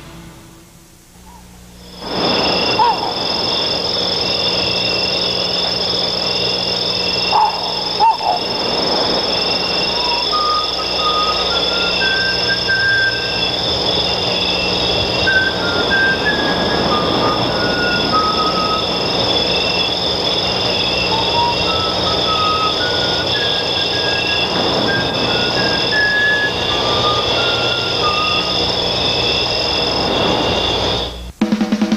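Electronic music made of beeping tones: steady high-pitched tones held under a slow melody of short beeps, with a low hum beneath. It starts suddenly about two seconds in, after a quieter moment, and cuts off right at the end.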